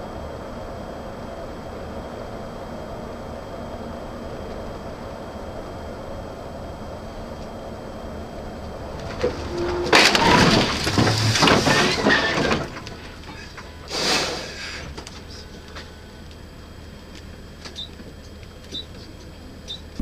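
Steady road and engine drone inside a car, broken about ten seconds in by a loud crash and scrape of a van sideswiping the car that lasts about two and a half seconds, with a second shorter noise a couple of seconds later.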